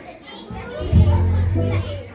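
Live band music: electric bass, keyboard and drum kit playing, with a low bass note held through the second half, and voices over the music.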